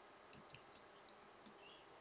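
Near silence with a few faint computer keyboard clicks as a command is entered at a terminal.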